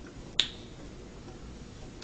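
Quiet room tone with one sharp, short click a little under half a second in, ringing briefly.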